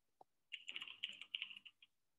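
Faint typing on a computer keyboard: a quick run of keystrokes starting about half a second in and lasting over a second.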